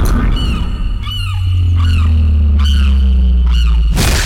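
Action-film soundtrack: a deep, steady low drone of background score that swells about a second in, with short squawking bird calls over it, about five times. A sharp hit lands at the very end.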